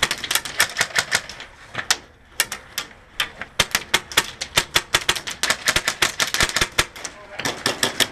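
Airsoft guns firing in rapid strings of sharp clicks, about ten a second, broken by short pauses about two and three seconds in.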